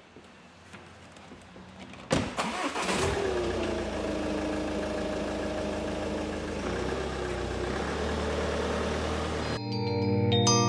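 A Ford Focus ST's 2-litre diesel engine starting. After a thump about two seconds in, the engine catches about a second later, its revs dropping back quickly to a steady idle. Bell-like music comes in near the end.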